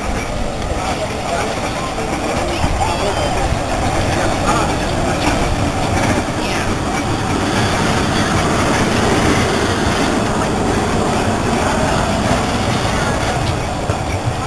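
Vintage electric tram and its trailer cars rolling slowly past on street rails: a steady rumble of wheels and running gear that builds a little over the first few seconds.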